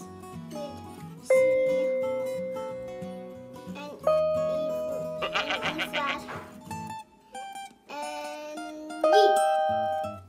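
Small electronic keyboard played chord by chord: sustained chords struck about a second in, about four seconds in and near the end, each fading away, over a repeating low accompaniment pattern that stops about seven seconds in.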